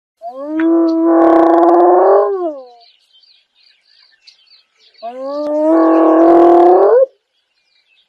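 Spotted hyena giving two long, loud calls a few seconds apart, each about two and a half seconds. Each call rises in pitch at the start, holds steady with a rough edge, and slides off at the end. Faint bird chirps can be heard between the calls.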